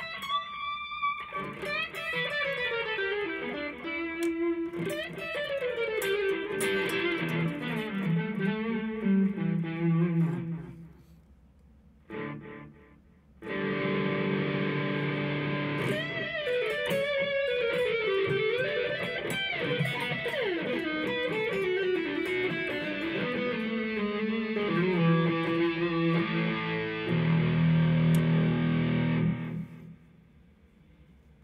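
Electric guitar (ESP LTD EC-1000) played through a NUX PG-2 portable effects processor and a Marshall MG amp: a lead phrase of descending runs. It stops for a couple of seconds about eleven seconds in, is played again, and ends on a held low chord that cuts off just before the end.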